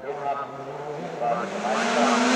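Race car engine approaching up a hill-climb course, its pitch rising as it accelerates and growing steadily louder toward the end.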